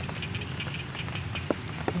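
Steady rain falling, a continuous patter of many small drops, with two sharp clicks in the second half.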